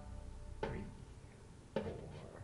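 Two short taps about a second apart, each followed by a brief ring from the banjo strings: a slow count-in before the banjo starts playing.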